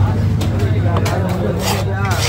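A cleaver knocks several times on a wooden chopping block as it cuts stingray meat. Under it runs a steady low engine hum, with voices.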